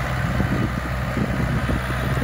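YTO Ecomaster 404 tractor's four-cylinder diesel engine running steadily under load, pulling a nine-tine cultivator through the soil.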